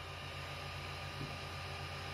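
Creality Ender 6 3D printer running a print: a steady low hum from its motors over fan noise, with a faint steady whine above.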